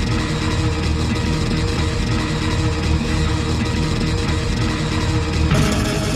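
Rock song in an instrumental stretch with guitar and a steady beat. The sound grows fuller and brighter about five and a half seconds in.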